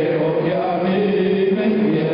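Acoustic guitars accompany a wordless, drawn-out vocal melody sung into a microphone, its notes held for a second or more.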